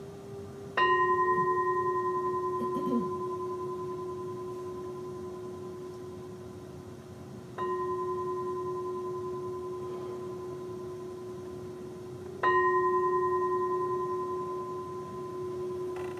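Metal singing bowl struck three times with a mallet, several seconds apart. Each strike rings with a low hum and clear higher overtones that fade slowly, and the middle strike is softer. The bowl marks the start of a meditation.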